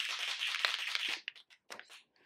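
Dry, scratchy rustling for about a second, then a few faint ticks: a paint pen being handled and worked against the paper of an art journal page.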